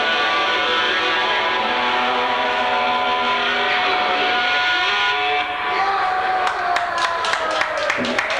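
Electric guitar chord and amplifier feedback ringing out at the end of a live punk song, one held tone sliding slowly down in pitch. Scattered hand claps start about six seconds in.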